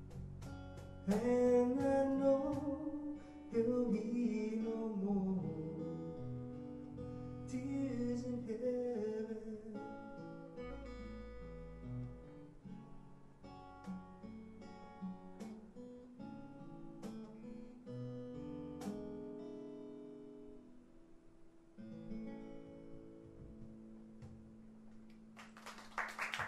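Small live acoustic band playing: strummed acoustic guitar with electric bass and cajon, a man's voice singing over the first part. The song then winds down to a last held chord near the end.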